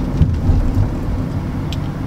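Steady low rumble of road and engine noise inside the cabin of a moving Mercedes-Benz car.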